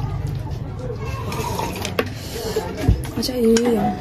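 Eating at the table: a metal fork and spoon scraping and clicking against a ceramic plate of tea leaf salad, with two sharp clicks, the second about a second after the first. A person's voice sounds briefly near the end, louder than the utensils.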